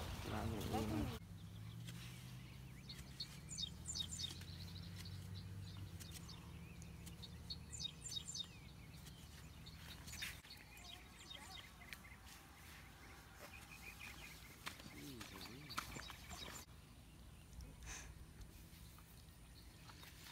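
Faint outdoor ambience with small birds chirping in short clusters of high notes, over a low rumble during roughly the first half.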